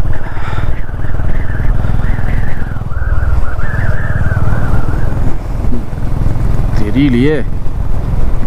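Motorcycle engine running steadily under way, heard close from the handlebars as a dense, even low pulsing.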